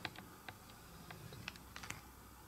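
Faint, irregular clicks and ticks in a quiet room, about a dozen over two seconds, with a few bunched close together near the end.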